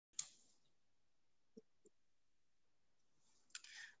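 Near silence, broken by a single sharp click just after the start and two faint soft knocks about halfway through, with a faint brief hiss near the end.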